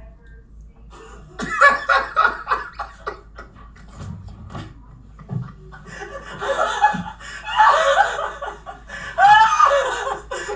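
Men laughing hard in two stretches: a quick burst of laughs starting about a second and a half in, and a longer run of laughter from about six seconds in.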